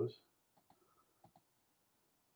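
Several faint, short clicks of a computer mouse, from about half a second to a second and a half in, as on-screen buttons are pressed. The tail of a spoken word is heard at the very start.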